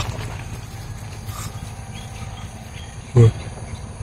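Quiet outdoor ambience under tree canopy with a faint, short bird call about a second in. A man's brief exclamation comes near the end.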